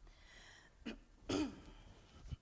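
A person clearing their throat in a quiet room: a short sound just under a second in, then a louder, longer one.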